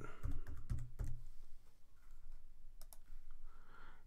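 Typing on a computer keyboard: a quick run of keystrokes in the first second or so, then two more faint clicks about three seconds in.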